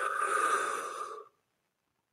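A man taking one long, audible breath in, lasting about a second and a half and fading out at the end.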